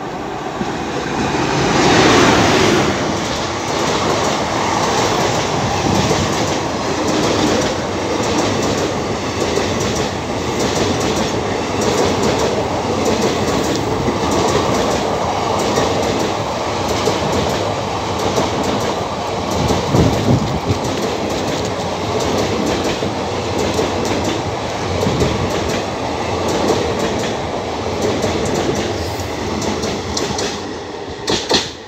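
Indian Railways express train hauled by a WAP-4 electric locomotive passing through at speed. It is loudest as the locomotive goes by about two seconds in, then a long run of coaches follows with a steady clickety-clack of wheels over rail joints and a heavier clunk about twenty seconds in.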